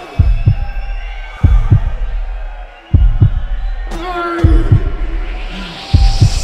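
Heartbeat sound effect: paired low thumps, lub-dub, repeating about every one and a half seconds over a steady low drone, with a short shouted voice about four seconds in.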